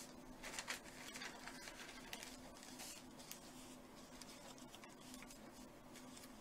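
Faint rustling and brushing of a sheet of painting paper being smoothed flat by hand on a felt mat: a series of short soft rustles, busiest in the first three seconds, over a faint steady low hum.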